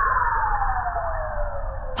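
A comic whistle-like sound effect: one tone gliding slowly down in pitch, with a hiss under it.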